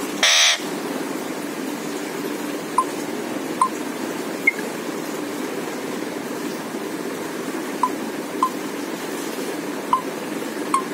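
Alexandrine parakeet giving one short, harsh squawk right at the start, then only a few faint short ticks now and then over a steady low hum.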